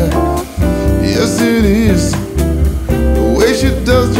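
Band music: a bass line and drums under a melodic lead line that slides and wavers in pitch, with no words sung.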